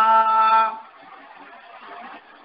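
A man chanting a devotional verse holds one long, steady note that cuts off about three quarters of a second in, followed by a brief pause with only faint background noise.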